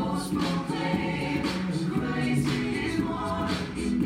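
Choir music: several voices singing sustained notes in harmony, gospel-style.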